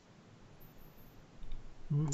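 Low room tone with a few faint clicks about a second and a half in, then a voice starting right at the end.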